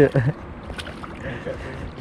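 A hooked fish splashing at the surface beside a landing net: a few faint splashes over steady wind and water noise. A laugh trails off at the very start.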